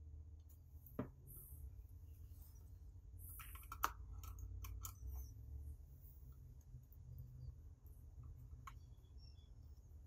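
Faint clicks and light handling noise of a small screwdriver and wire at a relay's screw-terminal strip as a wire is fitted and its terminal screw turned: one click about a second in, a sharper one near four seconds, and a few softer ticks, over a steady low rumble.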